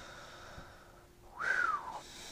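A man breathing out after a laugh, followed about one and a half seconds in by a short, high whistling tone that falls in pitch.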